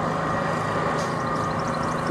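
A motor engine idling steadily, a constant hum that does not rise or fall.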